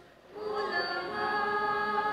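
Female voices singing a hymn into a microphone. A brief break for breath at the start, then a long held note.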